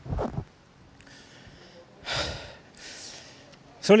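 A man breathing hard, about four heavy breaths roughly a second apart, the third the loudest. He is out of breath from exhaustion.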